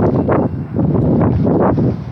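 The rough opening of a listener's recorded voice message: a loud, dense rush of noise like wind on the caller's microphone, with choppy speech buried in it.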